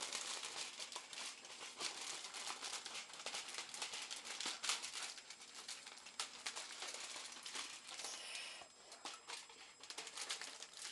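Aluminium foil crinkling and crackling as it is pushed and worked by hand inside a cut-open plastic soda bottle. It is a dense, continuous run of small crackles that eases off briefly near the end.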